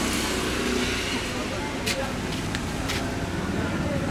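Street traffic passing close by: motor scooters and cars making a steady engine and road noise, with a few short sharp clicks about two and three seconds in.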